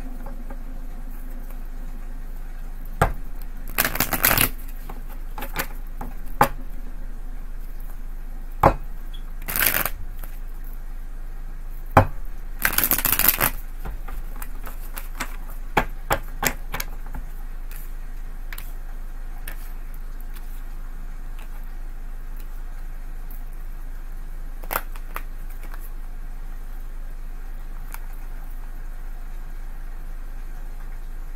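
A deck of tarot cards being shuffled by hand, in scattered short bursts of riffling and card snaps. The bursts are busiest in the first half, then grow sparse, over a steady low hum.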